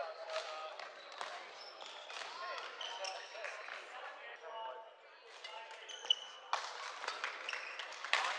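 Badminton hall ambience: overlapping chatter of many voices, short shoe squeaks on the wooden court, and sharp racket-on-shuttlecock hits, the loudest about six seconds in.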